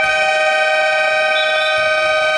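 Basketball game horn (scoreboard buzzer) sounding one long, steady blast of several pitches at once, starting suddenly, with the hall's echo.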